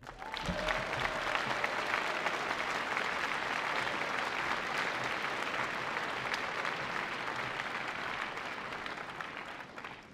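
A large audience applauding. The clapping starts about half a second in, holds steady and eases slightly near the end.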